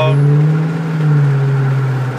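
Flowmaster American Thunder exhaust on a 2005 Dodge Magnum R/T's 5.7-litre Hemi V8, heard from inside the cabin as a loud, steady low note while cruising at around 2,000–2,500 rpm.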